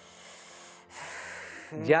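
A person breathing audibly close to a microphone: a soft breath in lasting under a second, then a louder breath out, like a sigh.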